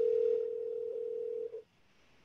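Telephone ringing tone heard by the caller through the handset: one steady tone that stops after about a second and a half, the line ringing at the other end before it is answered.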